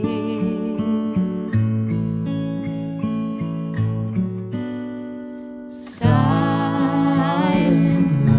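Acoustic guitar picking a slow carol accompaniment that thins out and fades, then a louder strummed chord about six seconds in, with a wavering, vibrato-laden sung note entering over it.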